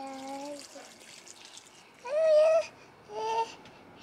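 A toddler babbling in three short pitched vocal sounds, the loudest about two seconds in, over a faint trickle of water poured from a watering can onto soil.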